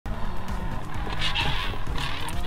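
Background music with a lightsaber sound effect: a steady low electric hum, and a whooshing swing a little past a second in.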